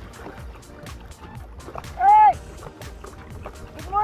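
A man's voice calls out loudly twice, each a short shout that rises and falls in pitch: once about two seconds in and again, lower, at the very end. Background music with a steady light beat plays underneath.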